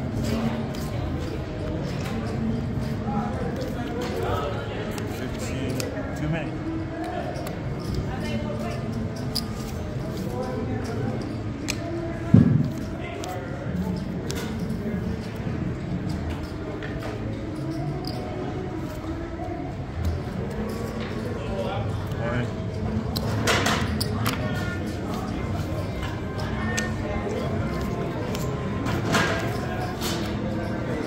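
Casino table background of indistinct voices and general hubbub, with light clicks of playing cards and chips handled on the blackjack table. One sharp thump comes about twelve seconds in.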